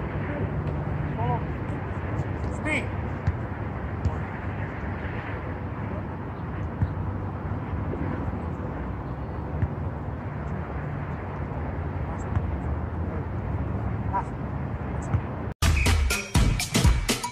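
Outdoor field ambience: a steady low rumble with faint snatches of distant voices and a few light knocks. Just before the end the sound drops out briefly and loud electronic music with a dance beat starts.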